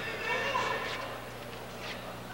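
Fencers' feet tapping on the piste, a few sharp taps about a second apart, with a voice calling out in the hall over a steady low hum.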